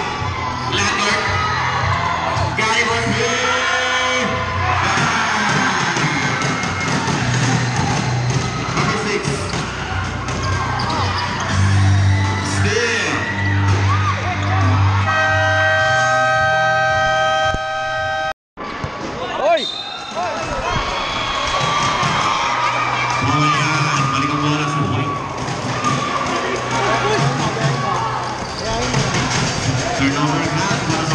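Basketball game in a crowded covered court: the ball bouncing and shoes on the floor amid crowd voices, some cheering and background music. About halfway through, a steady horn sounds for about three seconds; just after it the sound cuts out for a moment.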